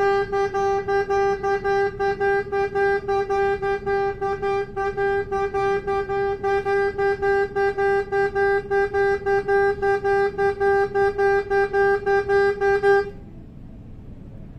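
Soprano saxophone holding one note and re-sounding it in a fast, even pulse of about four to five a second. The note stops abruptly about a second before the end.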